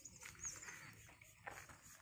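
Near silence, with a faint short bird chirp about half a second in.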